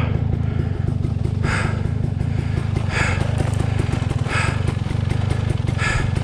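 Dirt bike engine idling steadily with a fast, even pulse. A short hiss comes about every second and a half over it.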